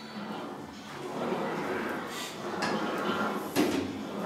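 An English wheel rolling a large steel sheet back and forth as the panel is wheeled to a crown, a steady rolling rumble with two sharp metallic knocks from the sheet partway through.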